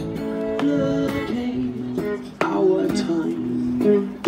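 Live acoustic guitar strummed in a busker's song, chords ringing on with sharp strums every second or so.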